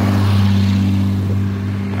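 An engine running steadily: a low, even hum that holds its pitch throughout.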